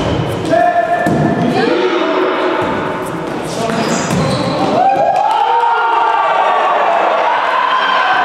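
Indoor volleyball rally in an echoing gym: sharp thuds of the ball being hit, with players shouting calls. From about five seconds in come loud drawn-out shouts as the team wins the point with a spike.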